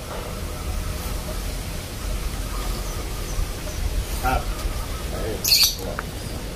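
Outdoor ambience: a steady low wind rumble on the microphone, with faint bird chirps and distant voices. A short, loud hiss comes about five and a half seconds in.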